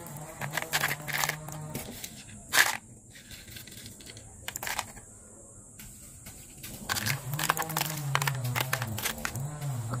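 Small stones dropped by hand into a clear plastic bottle, clattering in a run of short clicks, loudest about two and a half seconds in, with more around five to seven seconds in.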